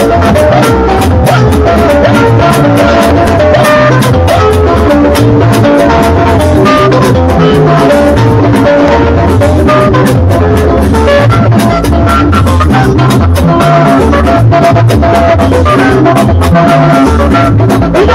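Live band playing Ika music: electric guitar lines over drum kit and bass with a steady, driving beat, loud through the PA.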